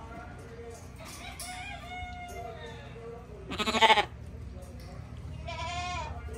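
Penned livestock calling: one loud, rough call lasting about half a second, about three and a half seconds in, with fainter calls before and after it.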